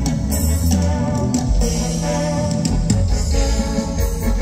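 Live band music through a PA system: electric guitar, bass guitar and drum kit with keyboard, playing loud and continuous dance music.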